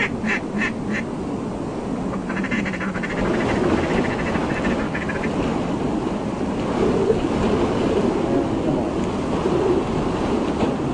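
Ducks quacking: a few quacks right at the start, then a faster run of quacking calls from about two to five seconds in, over a steady low background rumble.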